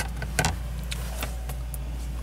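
Steady low hum with two sharp clicks, right at the start and about half a second in, then a few faint ticks: handling noise as the camera is moved from the paper wiring diagram to the car.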